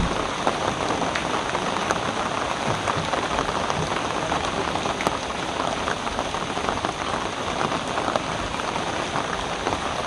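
Steady rain falling, an even hiss with scattered ticks of drops.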